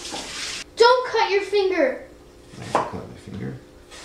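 A high voice sounds briefly about a second in, after a short hiss. Later come a couple of light knife knocks on a cutting board as apples are sliced.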